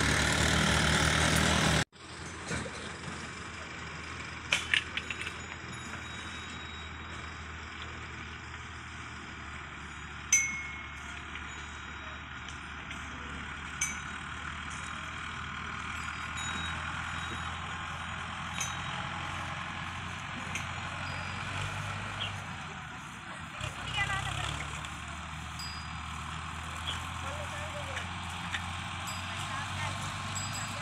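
Tractor diesel engines. A close tractor engine runs loudly for the first couple of seconds and cuts off abruptly. Then tractors hauling loaded sugarcane trailers run at a distance as a steady low engine hum, with a few sharp clinks, one ringing briefly.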